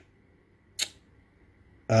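A single short, sharp click about a second in, against near silence.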